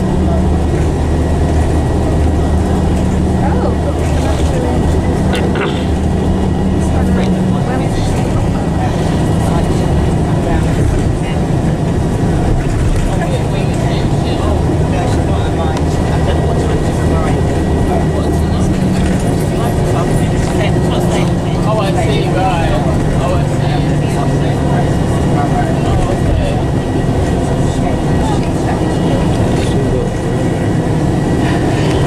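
Coach engine and road noise heard from inside the passenger cabin: a steady low drone whose engine note changes pitch about eight seconds in and again a little past halfway, under faint background voices.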